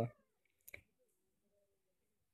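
Near silence, with one short click less than a second in.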